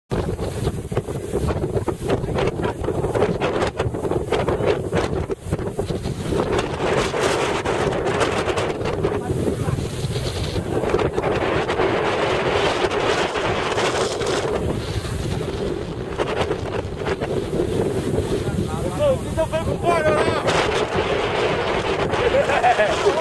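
Strong wind buffeting the microphone: a steady rush of noise rising and falling with the gusts. A voice comes through briefly near the end.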